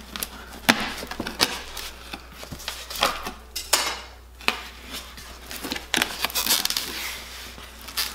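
Knife cutting open the packing tape on a cardboard box: irregular scrapes, clicks and knocks of blade on cardboard, with the cardboard flaps being pulled open near the end.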